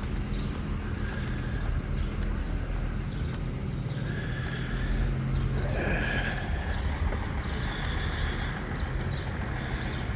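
Steady low hum of an engine running at idle, under faint outdoor background sound.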